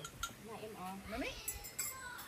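Unclear, quiet voices with a few light clinks of dishes and cups being handled.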